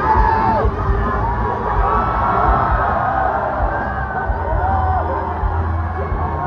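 Live pop concert: amplified music with a deep bass throb under a stadium crowd's high-pitched screams and cheers.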